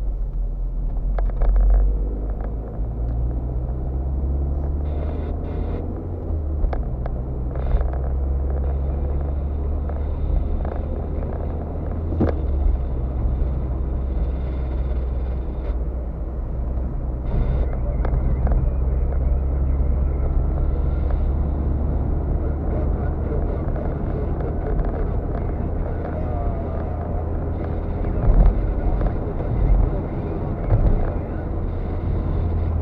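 Steady engine and tyre rumble inside a moving car's cabin, with a few light knocks and clicks from the road and interior.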